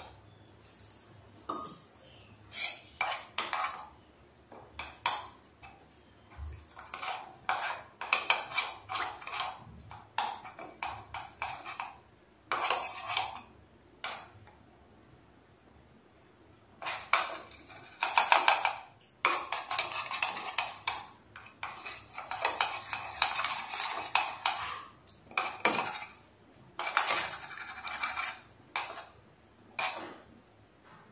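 Steel spoon stirring corn flour and water into a thin batter in a plastic bowl, clinking and scraping against the sides in quick runs, with a pause of a few seconds near the middle.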